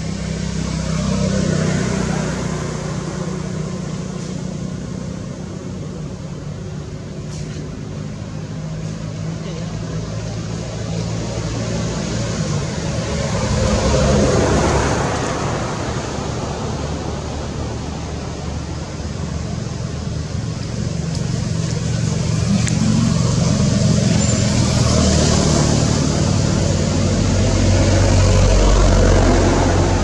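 Road traffic: a steady low engine hum that swells and fades several times as vehicles pass, with indistinct voices in the background.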